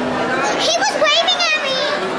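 Children's high-pitched excited voices, squealing and calling out for about a second and a half starting half a second in, over a background of general voices.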